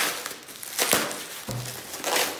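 Plastic shrink wrap and foam packaging crinkling and rustling as it is pulled open by hand, in a few separate bursts.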